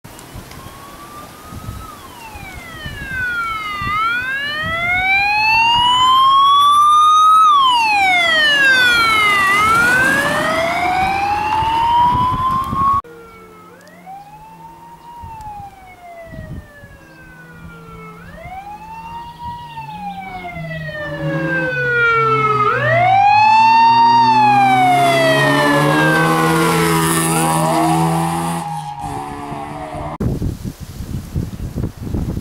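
Rally car engine on a gravel stage, its note climbing and falling again and again as the driver revs through gear changes and lifts for corners. The sound cuts off abruptly about 13 s in, then builds again, loudest about 24 s in.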